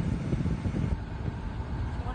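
Low, uneven rumble of a car's cabin, with wind buffeting the phone's microphone.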